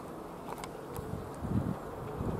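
Distant Cessna 182T Skylane's single piston engine droning steadily as a faint buzz, with wind and handling rumble on the microphone.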